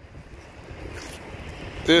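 Faint wind buffeting the microphone, a low uneven rumble, with a word of speech starting near the end.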